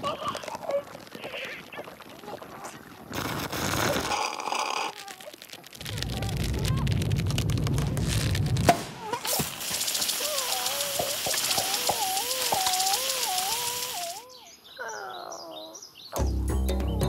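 Cartoon sound effects with no dialogue: a run of changing noises, then a hiss with a wavering, whistle-like tone for several seconds, and short falling glides near the end.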